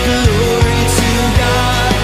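Live worship band playing a loud, full rock arrangement, with a sung melody carried over drums, bass and guitars.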